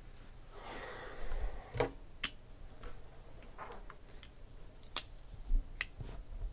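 Handling sounds on a tabletop: a brief rustle about a second in, then a few sharp clicks and small knocks spread over the following seconds. The last clicks come as a folding utility knife is picked up.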